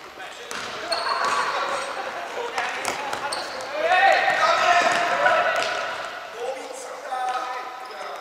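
Futsal players shouting to each other during play, loudest about halfway through, with the ball being kicked and thudding on the wooden court, echoing in a large sports hall.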